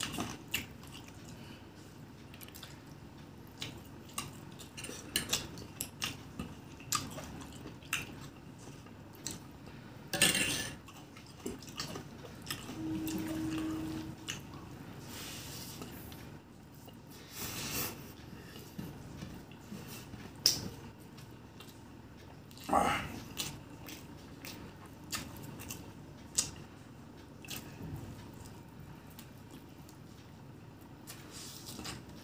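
Close-miked eating of chicken biryani by hand: wet chewing and mouth clicks, scattered through, with a few louder bursts now and then and a short steady hum about halfway.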